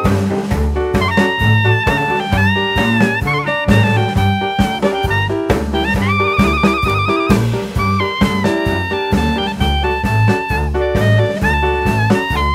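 Jazz instrumental background music: a horn melody, with a held wavering note about six seconds in, over a steady bass line and drums.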